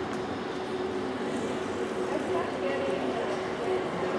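Ice arena ambience: a steady hum under an even wash of noise, with indistinct distant voices in the stands.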